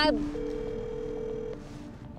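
Steady electronic tones: a low one held under a higher one that sounds for about a second.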